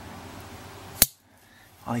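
A single sharp click about a second in, over faint steady room noise that drops away after it.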